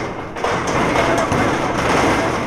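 A woman crying aloud and sobbing, mixed with dull thumps and rustling close to the microphone.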